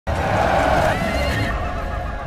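A horse whinnying, its pitch wavering, over a low rumble.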